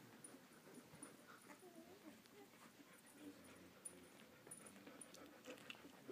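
Faint, brief whimpers and squeaks from 11-day-old Samoyed puppies.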